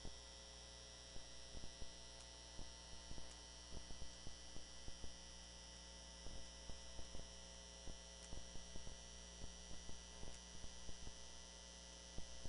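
Steady electrical mains hum in the audio feed, fairly quiet, with faint irregular clicks and knocks over it.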